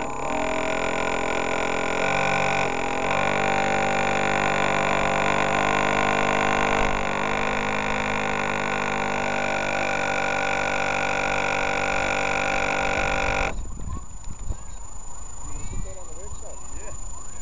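A radio-controlled model boat's electric drive motor runs steadily with a high whine, heard from on board. Its pitch steps up and down a few times with the throttle. The motor cuts off abruptly about three seconds before the end, leaving quieter water-side sound with a few short calls.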